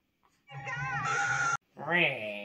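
A shrill, wavering scream-like cry from the film's soundtrack playing over the TV, cut off abruptly after about a second. Just after, a man's drawn-out cry with falling pitch.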